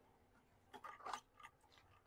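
A few faint, short scrapes about a second in as a truck's cylindrical air filter element is slid out of its housing, its mesh casing rubbing against the housing.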